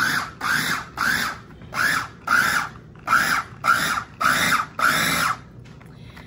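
Green KitchenAid mini electric food chopper pulsed about ten times in quick succession, each pulse a short whirr of the motor and blade that rises and drops in pitch, chopping bread-and-butter pickles and sharp cheese. The pulses stop about five seconds in.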